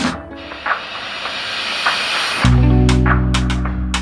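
Electric pressure cooker (Instant Pot) venting steam on manual release: a steady hiss lasting a little over two seconds. Background music with a sustained low chord then comes in.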